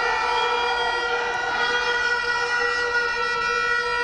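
A single steady pitched tone with many overtones, held unbroken for several seconds at an unchanging pitch.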